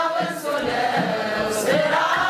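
Mixed men's and women's choir singing an Ethiopian Orthodox Tewahedo mezmur (hymn), with a handclap about one and a half seconds in.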